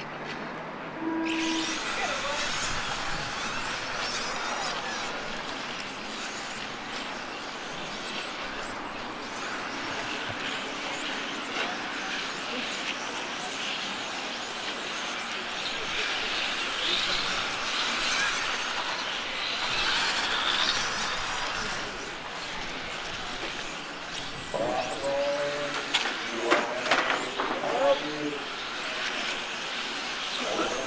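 Several 1/10-scale electric RC touring cars lapping the track, their motors making a high whine that rises and falls as they speed up and slow through the corners. Voices come in near the end.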